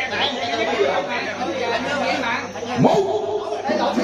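Several people chattering and talking over one another, with a brief rising exclamation a little before the end.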